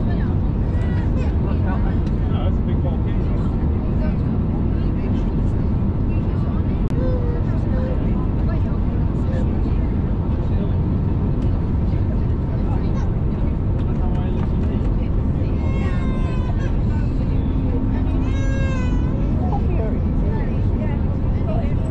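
Steady cabin noise of an Airbus A320-251N in flight, engine and airflow together, heard from a window seat over the wing. A high-pitched voice calls out briefly twice near the end.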